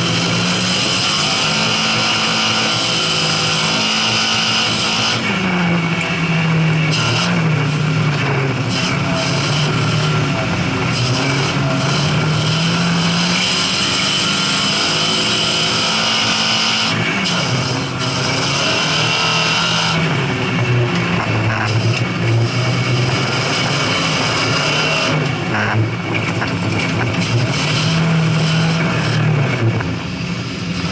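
Lada rally car's four-cylinder engine heard onboard at racing speed, its pitch repeatedly rising under acceleration and dropping back at gear changes and lifts, over a steady hiss.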